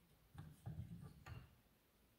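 Three faint wooden clicks from a spinning wheel's flyer and bobbin as they are handled and turned by hand while yarn is attached. The clicks fall in the first second and a half, then near silence.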